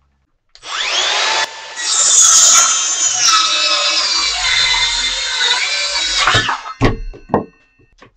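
Makita 18V LXT sub-compact brushless 6-1/2-inch cordless circular saw spinning up with a rising whine, then cutting through a two-by-six board for about four and a half seconds without stalling. Its motor pitch sags a little under load. Two short thumps follow after the saw stops.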